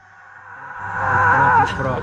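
Voices and some music fading in after an edit cut and growing louder, over a low steady hum.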